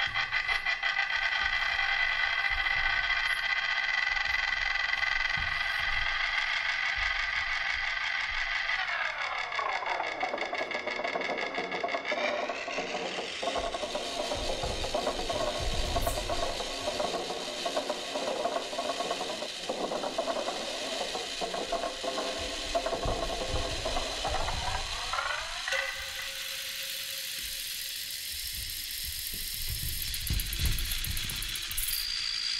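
Electronic dance score of sustained, stacked tones. About nine seconds in, the tones glide steadily down in pitch into a denser, grainier middle section, then glide back up about 25 seconds in. It settles on a single steady tone with a high hiss near the end.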